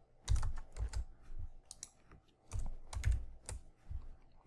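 Computer keyboard keys clicking in two short bursts of keystrokes, as a line of code is copied and pasted.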